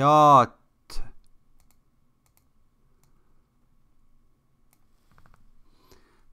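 A man's voice ends a word at the start, then a single sharp mouse click about a second in and a few faint clicks near the end, with near silence between.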